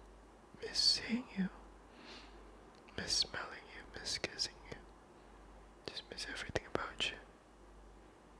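A man whispering in three short phrases with pauses between them, with a few sharp clicks in the last phrase.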